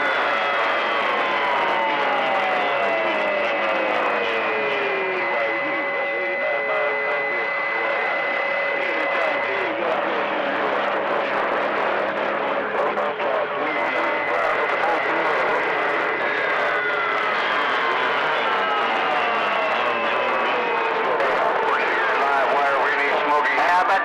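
CB radio receiver on channel 28 (27.285 MHz) in skip conditions: a dense wash of static with overlapping carrier heterodyne whistles. Some whistles hold steady and two slide slowly downward over several seconds, one at the start and one about two-thirds of the way in. Weak, garbled voices lie buried underneath.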